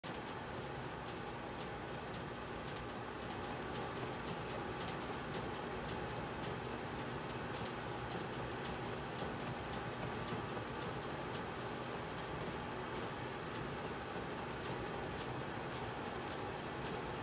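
Composite Easton Hype Fire bat rolled back and forth by hand between the rollers of a bat-rolling press during a heat-roll break-in. It makes a steady low rubbing with frequent faint, irregular clicks.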